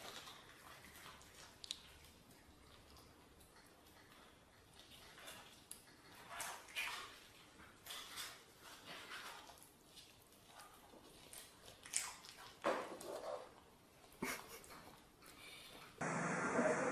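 A small dog eating treats off a hardwood floor: faint, scattered clicks and short soft sounds of its feet and mouth, with a few louder ones near the end.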